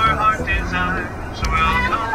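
Music with a singing voice over held chords and a steady beat about once a second, with the low running noise of a coach bus underneath.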